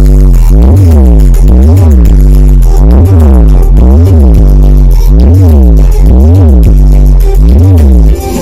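Electronic DJ dance music played very loud through a large Brewog Audio sound-system speaker stack: heavy sub-bass with a bass line that dips and rises in pitch about once a second.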